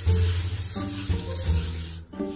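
Ocean cologne body spray from Bath & Body Works hissing in one long continuous spray that cuts off near the end, over background music.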